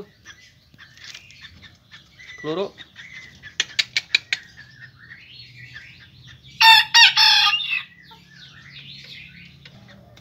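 A rooster crows once, a short, shrill crow of about a second, a little under seven seconds in. A few seconds earlier there is a quick run of sharp taps.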